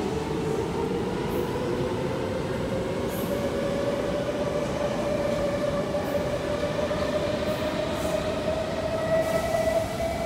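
Kawasaki C751B electric multiple unit running through the station without stopping, over a steady rumble of wheels on rail. Its traction motors give a whine that rises steadily in pitch as the train gathers speed.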